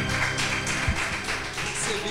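Instrumental accompaniment of a worship song dying away at its end, fading over the two seconds, with a few soft low knocks.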